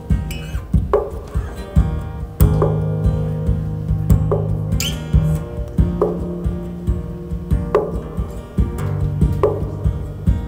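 Acoustic guitar strumming chords live in a steady rhythm, about two strokes a second, each stroke with a sharp percussive attack and the chord ringing on between strokes.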